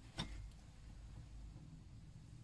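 Quiet room tone: a faint low rumble, with one brief tick near the start as a paper magazine is handled.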